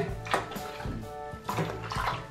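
Background music with sustained, held notes and a soft beat.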